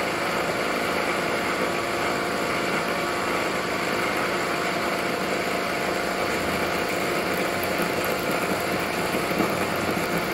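Milling machine taking a cut in metal under flood coolant: the spindle runs and the cutter chews steadily through the workpiece, flinging chips, with a low hum coming up in the second half.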